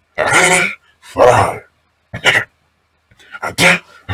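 A voice making four short vocal bursts with silent gaps between them, the last one about three seconds in.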